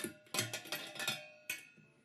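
Stainless-steel mini keg's lid being unclipped and opened: several sharp metallic clinks, each ringing briefly.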